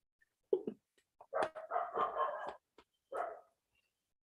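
A dog barking: short barks about half a second in and near the end, with a longer run of barking around the middle.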